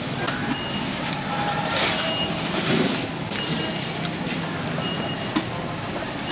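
Busy roadside traffic din with a short, high electronic beep repeating about every second and a half, like a vehicle's reversing beeper, and a sharp click near the end.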